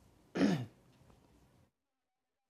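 A man clears his throat once, briefly, with a short falling grunt.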